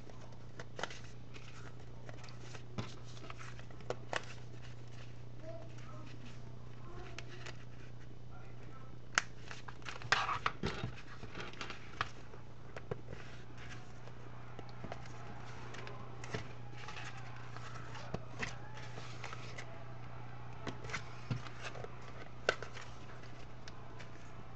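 Envelope-and-paper album pages being handled while metal binder rings are threaded through punched holes and snapped shut: scattered clicks and rustles, busiest about ten seconds in, over a steady low hum.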